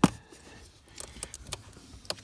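One sharp click, then a few faint plastic ticks about a second in: hand handling of the small parking-brake warning switch and its wiring connector.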